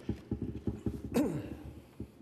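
A paper envelope or card being opened and handled close to the lectern microphone: a quick run of soft low knocks with a faint rustle. A short falling voice sound comes a little over a second in.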